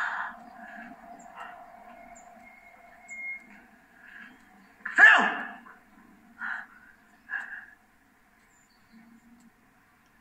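A person's sharp vocal cry about five seconds in, falling in pitch, followed by two brief shorter sounds, played back through a television speaker.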